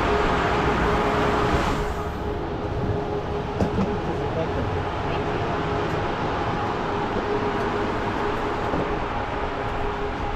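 Steady hum of a stationary passenger sleeper train's on-board equipment, with one constant tone. The busier station platform noise falls away about two seconds in, leaving the quieter sound inside the carriage corridor.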